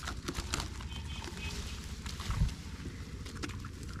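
Rustling and crackling of tall grass being moved through and handled, with scattered small clicks and one louder thump about two seconds in, over a low steady rumble.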